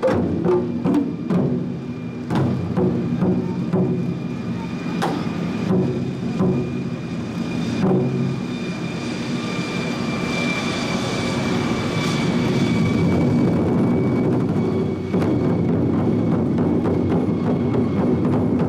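Chinese drum ensemble of large red barrel drums and racks of smaller drums playing together: separate rhythmic strikes for the first several seconds, then a continuous drum roll that swells in loudness, with a ringing tone over it, going on into rapid dense beating near the end.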